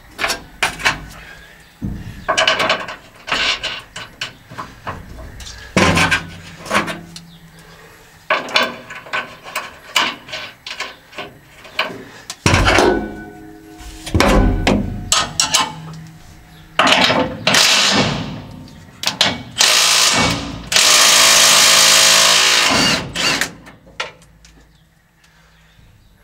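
Cordless drill running in short bursts, with clinks of hand tools on metal, then one steady run of about two seconds near the end, undoing fasteners to remove a combine harvester's concaves.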